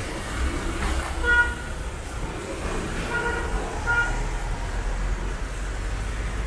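Street traffic rumbling, with a vehicle horn tooting three times: once about a second in, then twice more near the middle, the last toot short.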